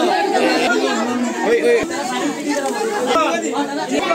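A crowd of people talking over one another, many voices at once in a room.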